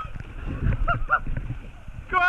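Water rushing and splashing as a rider slides down a water slide, with a short whooping shout about a second in.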